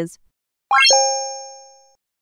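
Correct-answer sound effect: a quick rising run of notes ending in a bell-like chime that rings and fades over about a second, marking the right answer.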